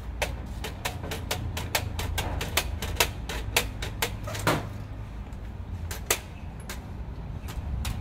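Quick, sharp plastic clicks and taps from a laser printer's parts being handled and pried apart, about four or five a second for the first half, then a few scattered clicks.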